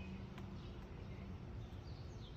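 Quiet background with a steady low hum and faint short, falling chirps of distant birds near the end.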